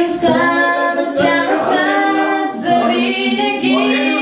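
A person singing into a handheld microphone: a slow pop song with long, held, wavering notes.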